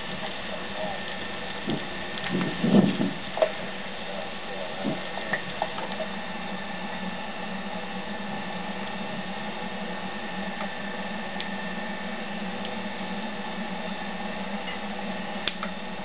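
Steady background hiss and hum, with brief faint voices about two to three seconds in.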